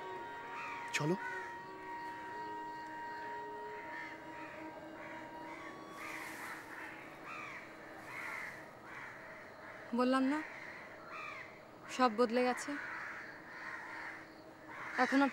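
Crows cawing over and over, with louder runs of caws about ten and twelve seconds in, over faint held notes of background music.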